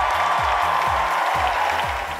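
Theatre audience applauding and cheering over music with a steady beat of about three thumps a second.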